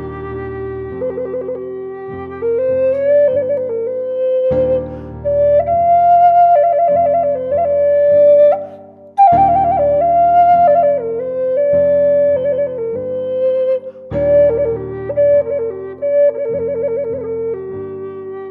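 Native American flute playing a slow melody that climbs and comes back down, ornamented with repeated trills, rapid alternations between two neighbouring notes. It plays over sustained low chords that change every second or two.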